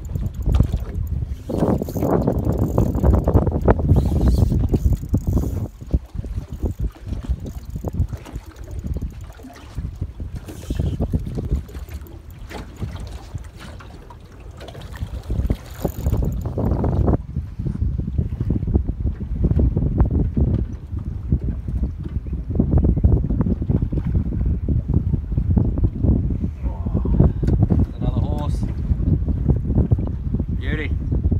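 Wind rumbling on the microphone on an open boat, with a quieter stretch in the middle.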